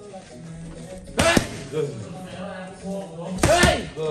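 Gloved punches smacking into a coach's Thai pads: two quick hits about a second in and two more near the end, over faint background music.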